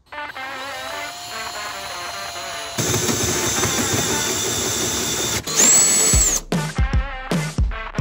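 Cordless drill driving a hole saw through the sheet-metal firewall. The cut starts about three seconds in, with a brief harsher, louder stretch near six seconds before it stops. Background music plays throughout.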